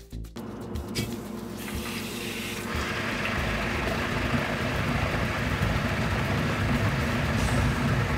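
Water and air blowing through a newly plumbed 4-stage under-sink reverse osmosis system under line pressure as its inlet valve is first opened: a steady hiss that starts just after the valve turns and grows louder about three seconds in.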